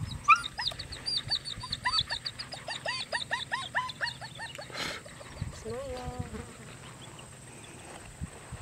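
German Shepherd puppy yelping in a rapid run of short, rising, high-pitched yelps, about five a second for about four seconds, followed by a shorter, lower whine.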